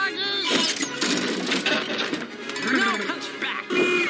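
Animated film soundtrack: music plays under wordless character vocal sounds, cries and grunts that bend up and down in pitch.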